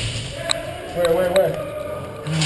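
A sharp click about half a second in, then a brief wavering vocal sound from a man, with another click near its end.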